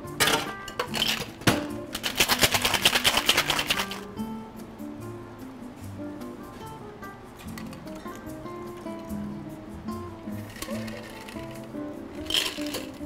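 Ice rattling hard in a metal cocktail shaker, a rapid even run of strikes lasting about two seconds, after a couple of sharp clinks as the tins are handled. Background music plays throughout.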